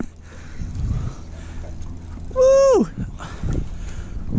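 A single high vocal cry a little over two seconds in, held briefly and then falling steeply in pitch, over a low steady background rumble.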